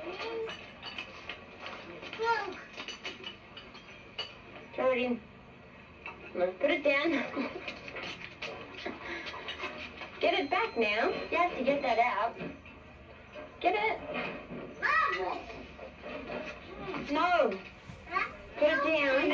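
Young children's voices in short bursts of babble and sing-song calls, swooping up and down in pitch, without clear words, played back from an old home-video tape through a TV speaker.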